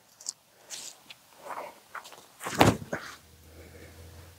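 Footsteps on dry grass as a disc golfer steps into a throw: a few soft rustling steps, then a louder thump about two and a half seconds in as he plants and releases the disc.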